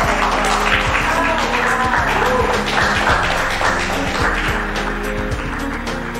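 Audience applauding over steady background music, the clapping thinning toward the end.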